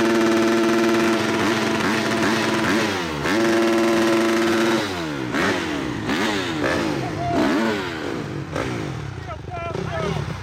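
Motocross bike engine held at high revs for about three seconds, dipping briefly and held high again, then blipped up and down over and over before it fades; voices call out over it near the end.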